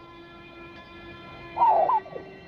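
A soft, sustained background music pad, then near the end a loud, high, wavering cry from a young girl, like a sob.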